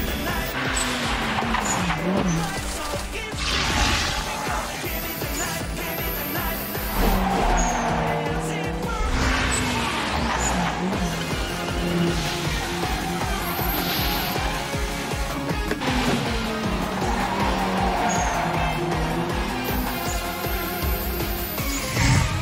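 Fast Eurobeat dance track with a steady pounding beat, mixed with the sound effects of Toyota AE86 cars racing: engines revving up and down and tyres squealing several times through corners.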